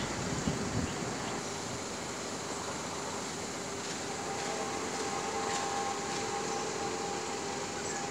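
Mobile crane running steadily during a lift, an even mechanical hum with a faint steady whine coming in about halfway through.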